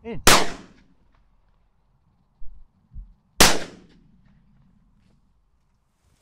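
Two shotgun shots about three seconds apart, each a sharp crack with a short fading tail, with a couple of low bumps between them.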